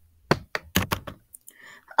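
Drawing supplies set down on a desk: a quick run of sharp knocks and clicks as a compass, pencil, marker and crayons are placed on the paper.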